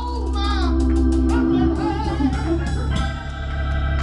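Live gospel music: organ holding sustained bass notes with a woman singing over it through a microphone.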